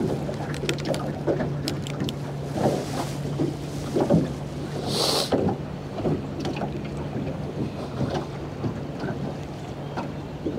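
Choppy water slapping and lapping against a small aluminum fishing boat's hull in irregular knocks and splashes, over a steady low hum. A brief hiss about five seconds in.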